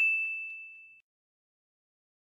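A single high, bell-like ding sound effect: one sharp strike whose clear tone fades away steadily, dying out about a second in.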